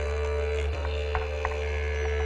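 Music: a low didgeridoo drone held steadily under a sustained higher tone, with a few light percussive taps.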